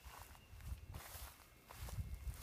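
Faint footsteps through grass, a few irregular low thuds.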